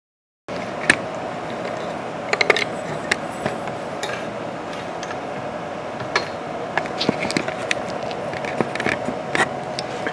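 CNC Shark router running with a steady hum, with scattered sharp clicks and light knocks throughout.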